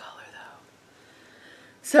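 A woman's voice trailing off softly, then about a second of quiet room hiss before she starts speaking again near the end.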